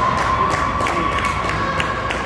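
Spectators cheering in an ice rink, with one long held high tone over the cheering and a few sharp clicks in the second half.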